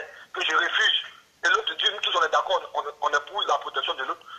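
Speech only: a man talking in French, with a brief pause a little after one second in.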